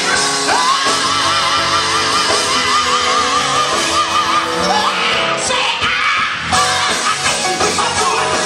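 Live gospel music in a large hall: band playing with singing. A long, wavering held note runs from about a second in to about halfway.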